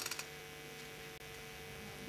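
Faint room tone: a low, steady electrical hum of a few even tones, with a brief click right at the start.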